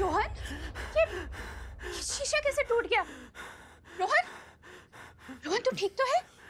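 A person gasping and letting out a string of short, falling cries of distress, about one a second.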